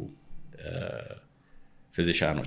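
A short throaty vocal sound from a man, not a word, lasting about half a second and coming a little after the start. It falls in a pause between spoken phrases.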